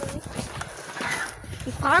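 Irregular footsteps and the rubbing and knocking of a phone carried in the hand while walking, its microphone brushing against a jacket.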